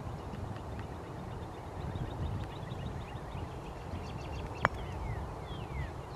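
A golf club striking a golf ball: one sharp click about two-thirds of the way in. Small birds chirp with short falling notes, and wind rumbles on the microphone throughout.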